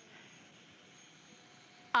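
Faint, steady hum of a Shark Apex DuoClean corded stick vacuum running, with a thin high whine from its motor, as it is pushed over a hardwood floor.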